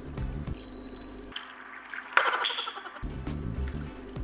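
Red wine poured from a jug into a clay dish of meat, a steady stream of liquid, over background music whose bass line drops out for a moment in the middle.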